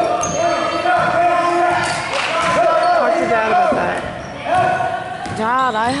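Basketball dribbled on a gym's hardwood floor, the bounces echoing in a large hall, under steady spectator voices and chatter; a burst of quick rising-and-falling high calls comes near the end.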